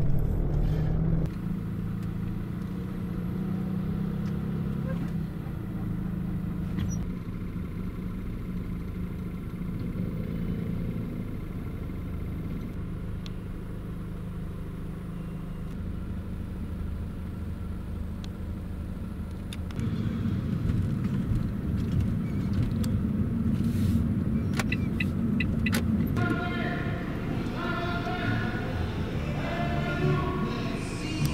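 Delivery van's engine running in slow, stop-start city traffic, heard from inside the cab as a steady low rumble that grows louder about two-thirds of the way through. Near the end, voices come in over it.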